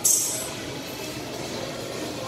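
A single sharp, hissy slap right at the start as a boxing glove strikes a heavy punching bag, dying away within half a second, followed by steady gym room noise.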